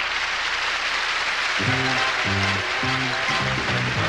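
Audience applause, a dense steady clapping. About a second and a half in, a band strikes up a tune over it in short, repeated notes.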